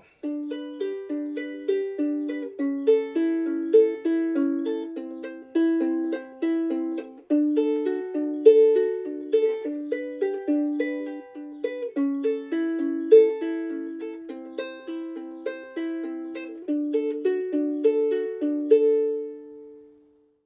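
Ukulele fingerpicked in a steady eight-note pattern (C, A, E, C, A, E, C, A strings, thumb and fingers) over a G, A7, C, D7 chord progression played around twice, each plucked note ringing into the next; the final notes ring out near the end.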